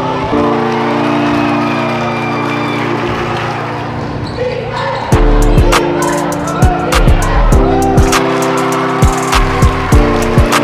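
Music: sustained chords that change every few seconds. About five seconds in, a deep booming bass and sharp, repeated percussive hits come in.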